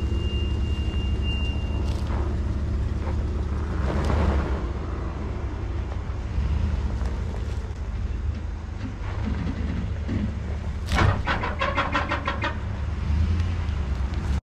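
Ford Raptor pickup's engine running steadily under load as the truck strains on a chain against a stump that does not budge, with a swell in engine sound about four seconds in. Near the end there is a rapid rattle of about seven clicks a second.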